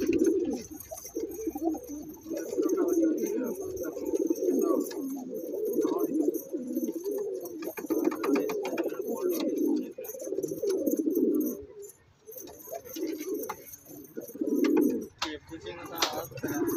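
Domestic pigeon cooing in a long series of low, rolling bouts, with short breaks between them and a longer pause about twelve seconds in.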